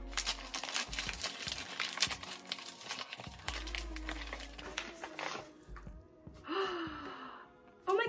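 Plastic packaging crinkling and rustling as a small package is opened by hand, busiest in the first few seconds, with background music underneath.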